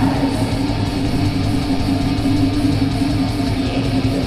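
A black metal band playing live, with distorted electric guitars held over rapid, dense drumming, as a raw audience bootleg recording.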